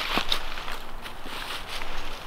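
Footsteps crunching and rustling through dry fallen leaves as two hikers walk uphill.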